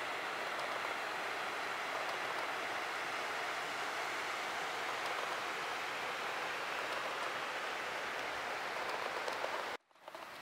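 A small mountain creek running over rocks: a steady rushing hiss that cuts off abruptly near the end.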